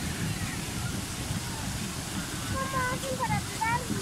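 Steady low rush of churning water from a pedal boat being pedalled hard, with a voice speaking faintly near the end.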